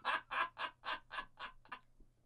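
A man laughing: a run of short breathy laugh pulses, about four a second, fading away and stopping near the end.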